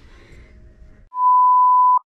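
Test-pattern tone: a single loud, steady, high beep that starts about a second in and cuts off abruptly, played under a colour-bar 'technical difficulties' card. Before it, only faint room rumble.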